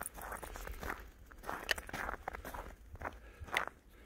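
Footsteps in snow: a person walking, with a run of short, irregular steps.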